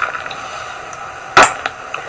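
A single sharp click about a second and a half in, with a fainter click just after, over low background hiss.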